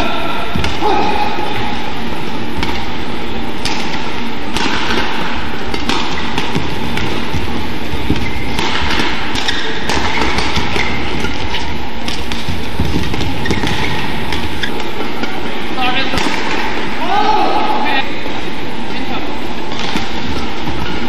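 Badminton play on an indoor court: racket hits on the shuttlecock and footfalls thud through the rallies over steady arena noise with voices. A sneaker squeaks on the court mat near the end.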